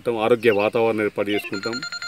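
A man talking steadily into a microphone. About three-quarters of the way through, a steady high electronic tone starts up beneath his voice.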